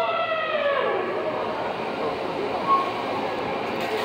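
Le Grand Éléphant's trumpet call, a long, horn-like blast that slides down in pitch and dies away about a second in. It is followed by the steady noisy clatter and hiss of the walking machine.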